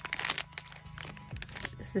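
Foil blind bag crinkling as it is pulled open, with a dense burst of crackles in the first half second and lighter rustles after that.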